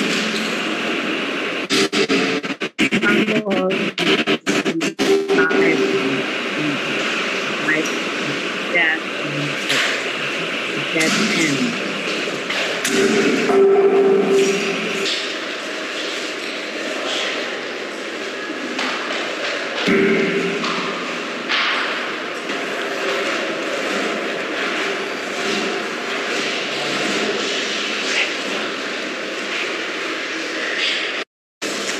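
The loud soundtrack of a performance video played back over a video call, with a voice in it too indistinct to make out, and a run of sharp clicks and dropouts a few seconds in.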